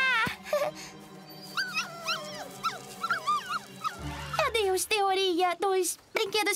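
Cartoon barking and howling: a run of high, swooping yips, then a lower string of short barks in the last two seconds, over background music.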